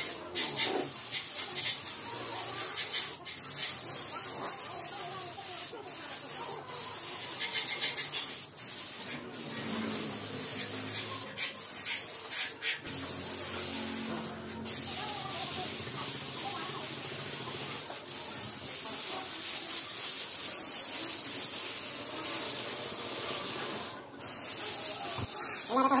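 Compressed-air spray gun with a gravity-feed metal cup spraying paint: a steady high hiss, broken by short breaks several times as the trigger is let off between passes.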